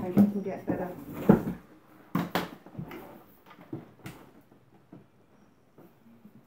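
Hard plastic knocks and clacks from handling a cordless stick vacuum: a couple of sharp ones about two seconds in and another near four seconds, as the vacuum is set down and its handle pressed into the main body.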